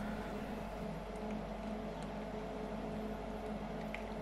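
Steady hum of a benchtop glycol keg dispenser's refrigeration unit running, while beer runs from its tap into a plastic jug.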